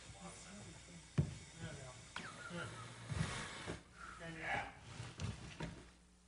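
Faint, indistinct voices over a low steady hum, with two sharp clicks about one and two seconds in.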